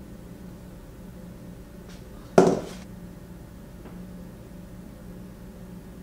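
One sharp clack of something hard being knocked or set down, about two and a half seconds in, dying away quickly, with a couple of faint ticks around it. A steady low hum runs underneath.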